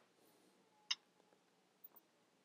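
Near silence broken by one sharp click about a second in and a fainter tick near the end: computer input clicks from selecting a spreadsheet cell and typing.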